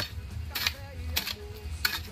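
Hoe blade chopping into dry, stony soil, three strikes about two-thirds of a second apart, digging around a cassava plant to unearth its roots.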